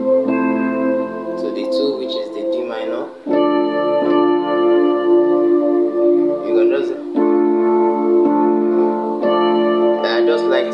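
Electronic keyboard playing held two-handed chords. The chord changes about three seconds in and again about seven seconds in.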